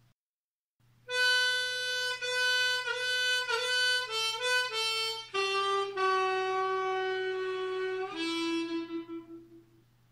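Diatonic harmonica in A playing a short solo phrase: a run of quick draw notes, then long held notes bent down on hole 3 draw, ending on a lower note that wavers and fades away.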